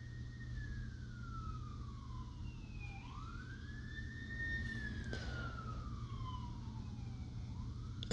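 Faint wailing emergency-vehicle siren, its pitch slowly rising and falling in long sweeps of about three to four seconds, heard over a steady low hum.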